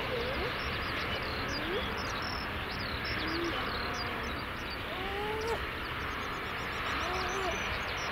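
Steady distant rumble of the Dash 8-400's turboprop engines as the plane rolls out at low power, with scattered short bird chirps and calls over it.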